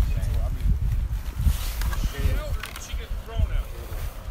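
Indistinct voices of people talking at a distance, over a steady low rumble and handling knocks on a phone microphone carried by someone walking.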